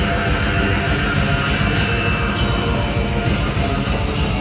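Death metal band playing live at full volume: distorted electric guitars, bass guitar and drum kit with steady cymbal wash. The sound is dense and unbroken.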